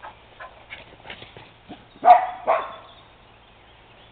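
A dog barks twice in quick succession about halfway through, after a couple of seconds of faint scattered rustling and clicks.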